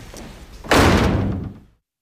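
A door slammed shut: one sudden loud bang about two-thirds of a second in, dying away over about a second.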